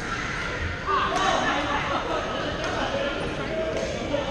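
Badminton rackets striking shuttlecocks in a large gym hall: a few sharp clicks, roughly one every second or so, under people talking.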